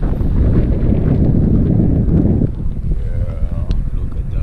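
Wind buffeting the microphone and tyres rolling over a gravel road, from a camera held out of a moving car's window. The rumble eases about two and a half seconds in.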